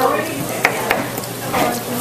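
A spoon stirring and mashing guacamole with flaked smoked fish in a bowl: a wet, scraping mixing noise, with a couple of clicks of the spoon against the bowl.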